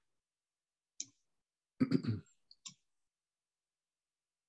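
A person clears their throat after a short spoken 'So', with a brief mouth noise about a second before and two small clicks just after; between these the call audio drops to dead silence.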